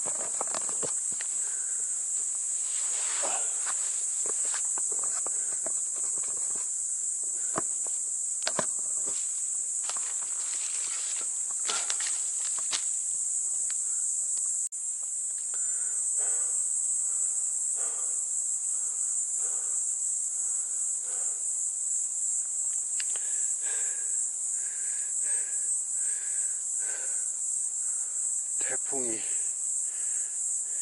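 A steady, high-pitched chorus of insects such as crickets runs throughout. During the first half it is joined by footsteps crunching and rustling through dry leaf litter and twigs on a slope; these stop about halfway through.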